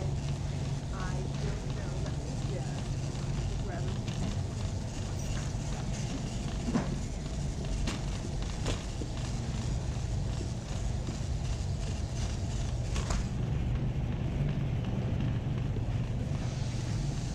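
Wire shopping cart rolling along a concrete warehouse-store floor with a steady low rumble and a few sharp metal clicks and rattles, over the murmur of other shoppers' voices.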